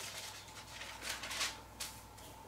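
Thin Bible pages being turned by hand: a few short, soft paper rustles.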